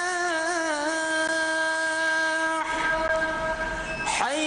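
Call to prayer (adhan) for Maghrib: a muezzin's voice holds one long note, with a few melodic turns early on. The note breaks off near the end, before the next phrase begins with a sliding pitch.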